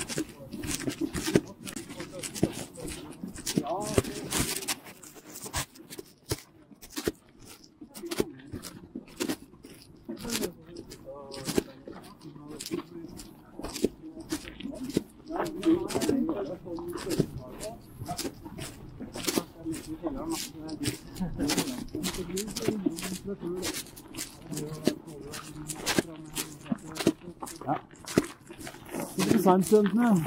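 Footsteps of several walkers crunching on a packed-snow and icy path, a quick irregular run of short crunches, with low indistinct talk under them.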